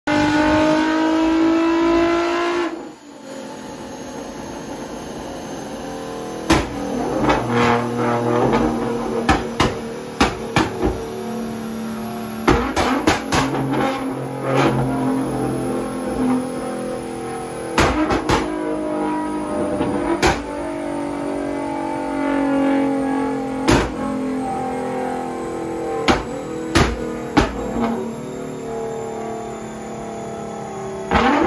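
Nissan GT-R's twin-turbo V6 revving up for the first few seconds and cutting off sharply. It then runs on under a long series of loud exhaust bangs and pops, single and in quick clusters, from a switchable flame map that fires flames out of the tailpipes.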